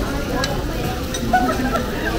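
A sparkler fountain candle on a birthday cake fizzing steadily, with a few sharp crackles, over background chatter.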